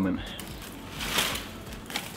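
A brief rustling noise that swells and fades about a second in, after the last word of a man's speech at the start.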